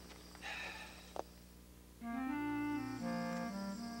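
Accordion playing held, reedy chords that start about halfway through and change once a second later. Before that there is only a brief rustle and a single sharp click.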